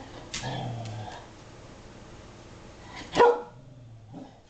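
Shetland sheepdog barking: one sharp, loud bark about three seconds in, after a quieter sound just after the start.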